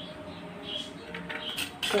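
Faint background music, with speech beginning right at the end.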